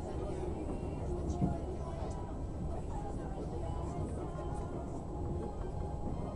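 Steady low rumble of a passenger train running along the track, heard from inside the carriage, with indistinct voices in the background.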